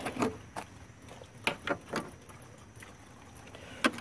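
A screwdriver working the screws of a plastic radiator cover, giving a few faint, irregular clicks and taps of metal on plastic over a low hiss.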